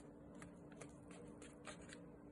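Knife slicing through a butter-basted steak's seared crust on crumpled aluminium foil: faint, scattered crisp crackles and ticks, several a second.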